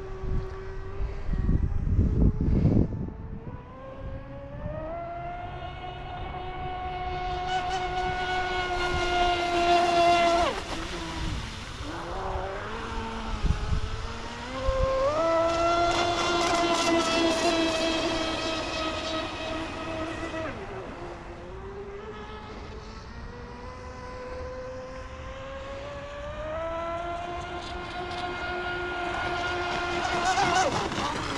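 Electric RC speed boat's brushless motor and propeller giving a high whine that climbs in pitch as it accelerates on a full-speed run, cuts off suddenly about ten seconds in, comes back and holds for several seconds, drops again, then climbs once more near the end. A burst of low rumble comes about two seconds in.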